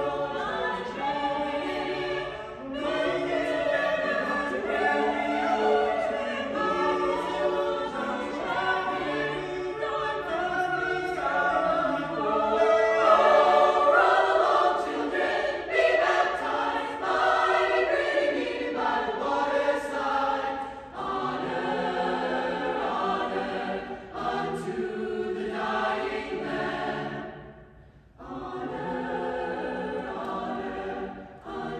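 A choir singing, with sustained, overlapping vocal lines. Near the end the sound drops out briefly for a breath between phrases, then the singing resumes.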